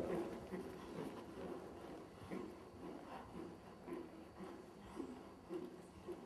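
Faint, soft rhythmic sounds of a horse trotting, about two a second.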